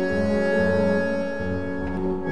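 Tango ensemble of violin, bandoneon, piano and double bass playing a slow passage: long held chords over double bass notes that change about a second and a half in.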